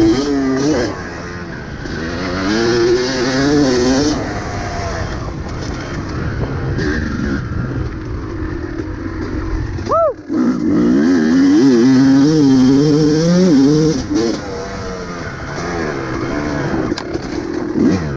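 Kawasaki KX250 two-stroke single-cylinder dirt bike engine revving up and down as the bike is ridden. About ten seconds in the sound drops out briefly, then the engine revs hard again.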